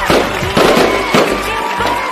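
A sparkler fizzing and crackling in a dense spray of sparks over the first second or so, with a few louder surges, over a Hindi film song.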